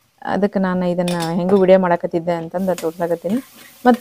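Gravy frying in a stainless steel sauté pan and being stirred with a spatula, with a faint sizzle from about two and a half seconds in. Over it, and louder, a voice sings in long held notes.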